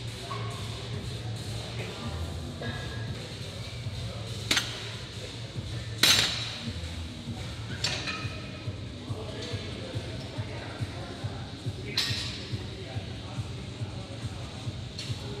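Metal weight-stack plates of a cable pulldown machine clinking four times, the loudest about six seconds in, over background music.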